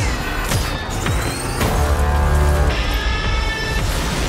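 Film trailer music with a heavy, sustained bass, over which sound-effect hits land about half a second and a second and a half in, with a rising whoosh between them.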